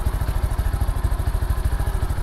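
Custom Honda Wave 54FI motorcycle's fuel-injected single-cylinder four-stroke engine idling with a fast, even exhaust beat. The idle is very smooth.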